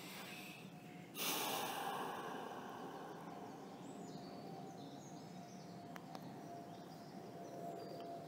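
A deep breath through the nose about a second in: a sudden rush of air that fades away over two to three seconds, followed by a faint quiet background.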